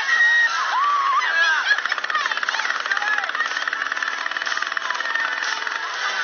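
Voices whooping and shouting, giving way about two seconds in to a fast, even mechanical rattle that lasts about three seconds.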